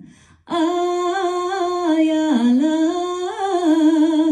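A woman singing solo with no accompaniment: after a short breath about half a second in, she holds long notes with a slight warble, sliding down in pitch about halfway through and climbing back up.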